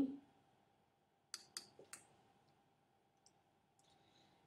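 Calculator keys being pressed: three short, sharp clicks about a third of a second apart, a little over a second in, then a faint tick later; otherwise very quiet.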